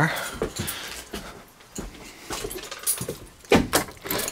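Keys rattling and a lock working at a front door as it is unlocked and opened, a series of small clicks with one sharp knock about three and a half seconds in.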